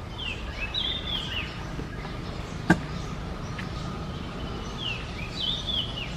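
A bird singing the same short phrase of quick, falling chirps twice, once near the start and again near the end. A single sharp click, the loudest sound, comes a little before halfway, over a steady low background rumble.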